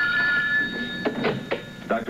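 Telephone ringing with a steady, even tone, cut off about a second in as the handset is lifted, followed by a few sharp clicks of the receiver being picked up.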